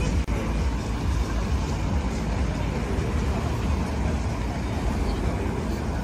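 Busy city street ambience: steady road-traffic noise with a deep rumble, and faint voices of passers-by.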